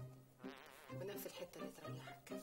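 A short, insect-like buzz beginning about half a second in, over soft background music made of short repeated notes.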